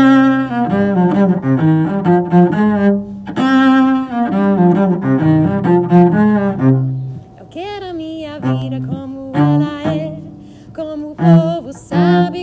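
Cello bowed in a quick, rhythmic forró melody. About seven seconds in the playing thins out and a singing voice joins the cello.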